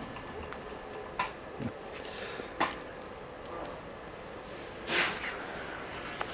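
Brown bear moving against a wire-mesh enclosure: a few faint clicks and knocks, with one short, louder rustling burst about five seconds in.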